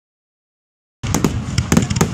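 The audio cuts out completely for about the first second. Then aerial fireworks come in: several sharp bangs in quick succession over a low rumble.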